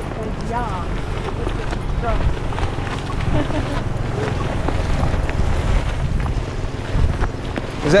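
Wind buffeting an action camera's microphone, a steady low rumble, with faint indistinct voices over it.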